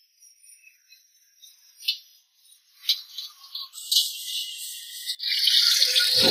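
Metal spatula clinking and scraping against a wok while rice is stir-fried: a few sharp clinks, then a hissing sizzle that grows from about four seconds in.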